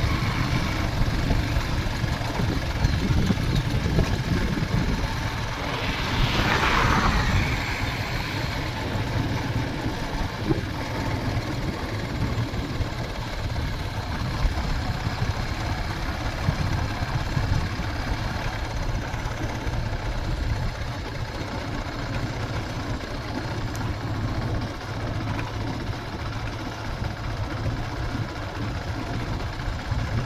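Motorcycle engine running steadily at low road speed, mixed with wind and road noise on the microphone; a brief hiss rises about six seconds in.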